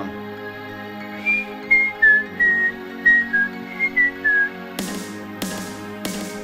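A person whistling a short tune of about nine clear, high notes, some dipping in pitch at their ends, over steady background music. Near the end the music brings in a few sharp noisy hits.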